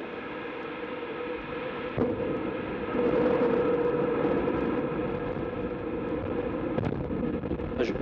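Ariane 5's Vulcain 2 liquid-fuelled main engine running on the launch pad in the seconds after ignition, before the solid boosters light: a steady rushing exhaust noise that grows louder about three seconds in.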